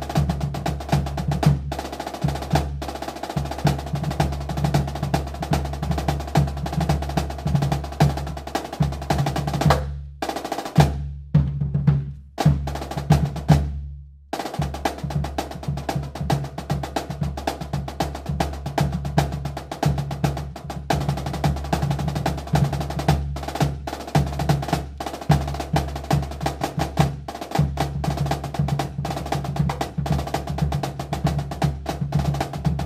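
Rudimental drumming on a rope-tension snare drum with rapid rolls and strokes, over a steady low beat from a rope-tension bass drum. About ten seconds in the playing thins to a few single accented strokes left to ring, then the dense drumming resumes.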